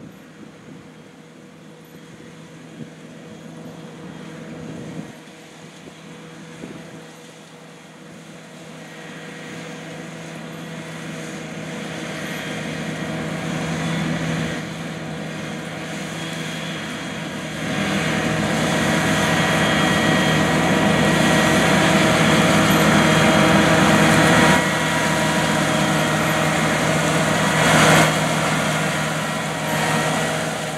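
John Deere 8360RT track tractor's diesel engine running steadily as it pulls a 40-foot planter. It grows gradually louder as the tractor approaches, with a brief louder moment near the end.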